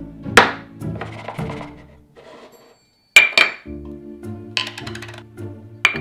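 Background music with kitchen handling sounds over it. A sharp knock and scrape of a chef's knife on a wooden cutting board comes first. After a second of near silence there are several sharp metallic clinks with a short ring, from a knife and a metal measuring cup on the board.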